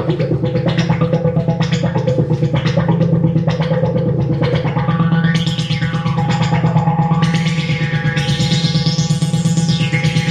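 Novation Supernova II synthesizer running its arpeggiator: a fast, even stream of notes over a steady low tone. From about halfway the sound grows brighter, climbing to its brightest just before the end and then dulling again.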